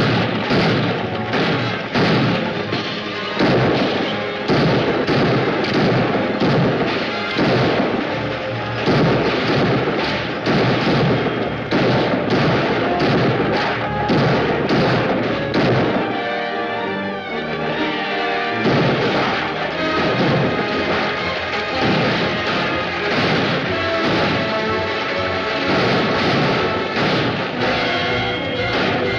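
Orchestral action score over a gunfight: frequent sharp gunshots with galloping horses and wagons. The shots let up briefly about two-thirds of the way through.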